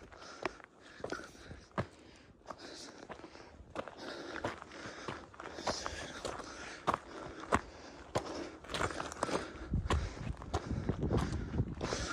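Footsteps crunching on loose rock and gravel of a steep scree trail, in an uneven walking rhythm. A low rumble comes in over the last few seconds.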